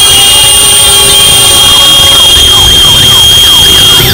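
Loud street noise from a gathering of boda boda motorcycle taxis, with steady high-pitched tones over a low rumble. About halfway in, a siren-like wailing tone starts, sweeping up and down several times a second.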